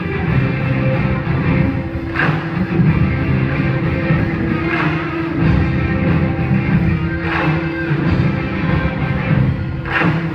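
Live rock band playing loudly: electric guitars over a drum kit, with a sharper accent about every two and a half seconds.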